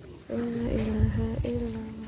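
A man's voice chanting an Islamic recitation in long, steady held notes. It starts a moment in and pauses briefly about a second and a half in.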